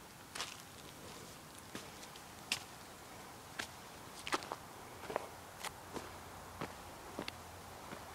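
Footsteps on dry, cracked mud and gravel: about nine short, sharp crunches, roughly one a second, at an uneven pace.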